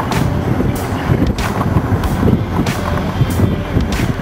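Vehicle driving at speed, its road and engine rumble heard from on board, with gusts of wind buffeting the microphone.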